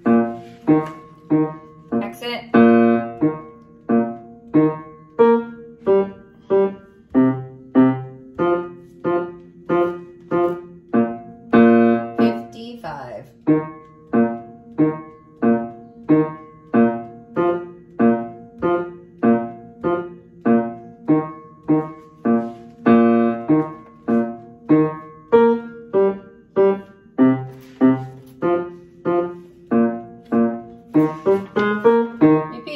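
Upright piano playing a tuba and bass clarinet band part: a steady line of notes struck one after another at an even pace.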